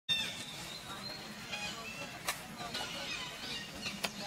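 Thin, high-pitched animal squeaks and chirps, some held and some sliding down in pitch, with a sharp click a little past halfway.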